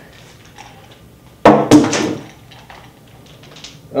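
Ice cubes clattering in a small plastic jar as they are tipped out into a jeans pocket, in two sharp loud bursts about a second and a half in.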